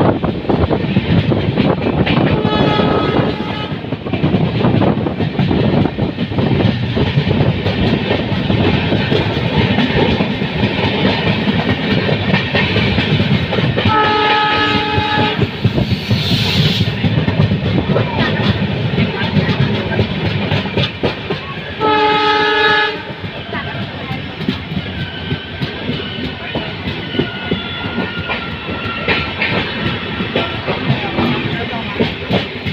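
Passenger train running at speed with wheels clattering over the rail joints, heard from an open coach door. The WDP4D diesel locomotive's horn sounds three times: faintly about two and a half seconds in, then louder blasts around the middle and about two-thirds of the way through.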